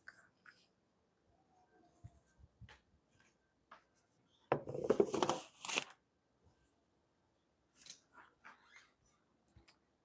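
Handling noises: a few faint taps and knocks, then a loud rustling, crinkling burst lasting a little over a second, about four and a half seconds in.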